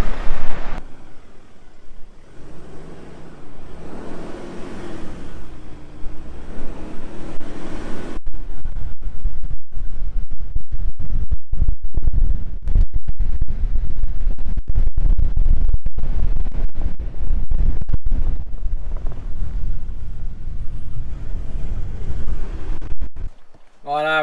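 Wind buffeting the camera microphone on an open beach: a heavy low rumble from about eight seconds in, gusting and cutting in and out many times. The first seconds are quieter, with faint background sound.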